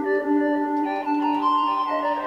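Sylenth1 software synthesizer playing a lead patch: sustained electronic notes, several pitches held together, stepping to new notes about a second in and again near the end.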